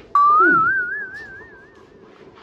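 A whistle: one clear note that slides up, then wavers evenly about five times a second for about a second and a half before fading, with a short low falling sound underneath near its start.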